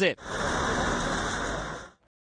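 Steady outdoor street noise with a low rumble of traffic, fading out just before the end.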